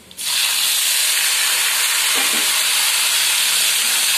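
Chopped tomatoes dropped into hot oil in a kadai, setting off a loud, steady sizzle that starts suddenly just after the start.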